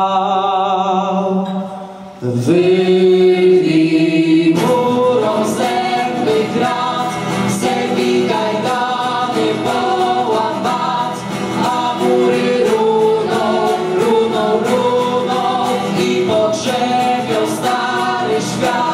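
A school vocal ensemble singing a Polish uprising song in harmony, accompanied by strummed acoustic guitars. A held chord fades away about two seconds in, a new sustained note follows, and from about four seconds in the voices move through a melody over a steady guitar strum.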